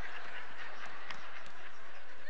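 Faint, scattered laughter in a large, reverberant hall, heard over a steady background hiss.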